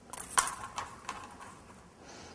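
Small clicks and rustling of beads and thin metal craft string being handled and twisted by hand, loudest about half a second in, then fading.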